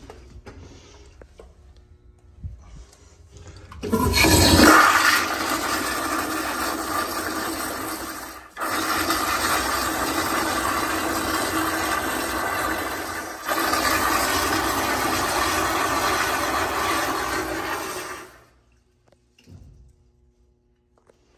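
A 2000s American Standard Madera flushometer toilet flushing. After a few quiet seconds the valve opens with a sudden loud burst of rushing water. The flush then runs strong and steady, dipping briefly twice, and stops abruptly near the end.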